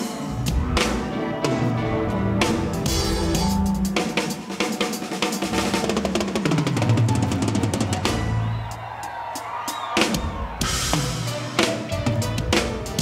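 Drum kit played live in dense, rapid patterns of snare, tom and kick-drum strokes with cymbals. Low sustained notes from the band run underneath.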